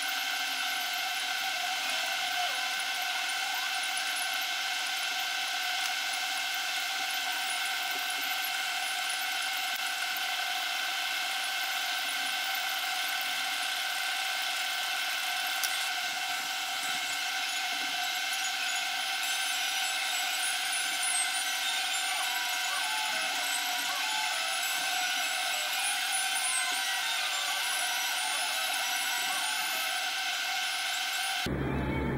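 A steady, high-pitched background whine made of several constant tones, with no change in pitch or level.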